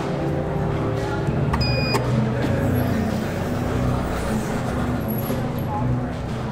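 A short electronic beep about two seconds in, then the elevator's sliding stainless-steel doors opening, over a steady low hum.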